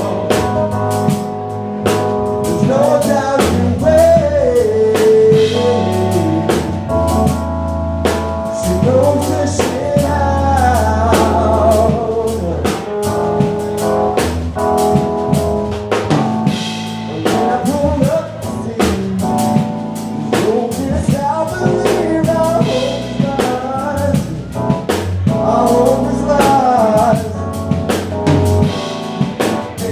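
Live band playing a song: a drum kit keeping a steady beat under a guitar and keyboard, with a lead voice singing a wavering melody over the chords.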